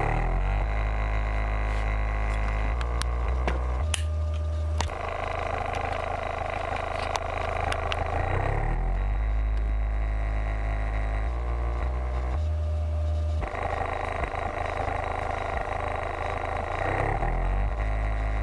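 Kicker Comp C 12-inch car subwoofer (44CWCD124) playing free air, with no enclosure, through a test-tone mix from 26 to 52 Hz: a deep bass tone that steps to a new pitch every second or few as the cone makes long excursions. The tone comes with a strong buzz of overtones above it.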